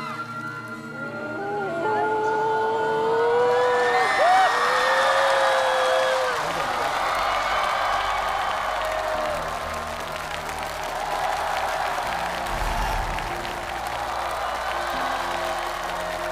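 A studio audience crying out in shock, with long rising and falling voices in the first six seconds, then cheering and applause over low, dark background music.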